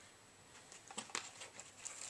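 Faint handling sounds: a few soft clicks and rustles from about half a second in, as a plastic fishing lure is handled and set down, after near silence at the start.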